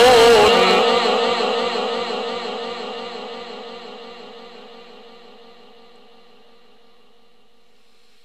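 A male Quran reciter's last held, ornamented note dying away through the sound system's heavy echo. The wavering tone fades steadily over about six seconds into a faint steady background hiss.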